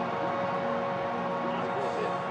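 Background music of long held chords, steady in level, with faint voices under it.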